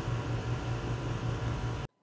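Steady room background noise: an even hiss with a low hum underneath, like a running fan or appliance, which cuts off suddenly near the end.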